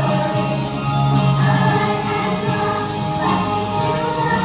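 Children's choir singing a song together over instrumental accompaniment.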